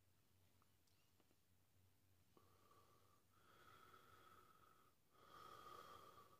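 Faint, drawn-out breaths through the mouth, three long ones in the second half with the last the loudest, from a man whose mouth is burning from a freshly eaten Carolina Reaper pepper.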